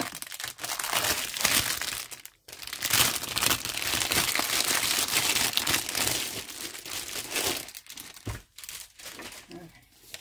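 Clear plastic sleeve around a rolled canvas crinkling and rustling as it is handled and pulled open, with a brief pause about two and a half seconds in and quieter handling near the end.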